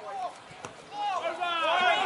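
Several voices shouting and calling at once, growing louder about a second in, with a single sharp tick shortly before.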